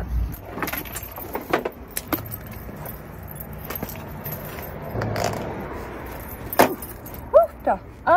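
Inline skates being pulled on and fastened: scattered clicks and knocks from the plastic boots and buckles, with some rustling. The loudest is a single sharp click about two-thirds of the way in.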